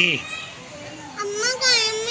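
Children's voices while they play, with a high-pitched child's call lasting about a second in the second half.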